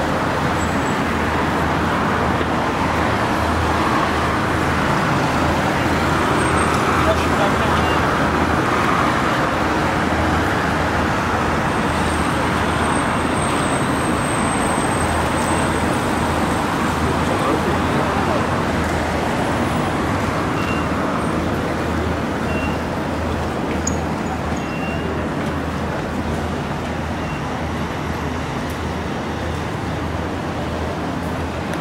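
Steady city street traffic noise, a continuous rumble of passing vehicles with indistinct voices of passers-by mixed in, easing slightly toward the end.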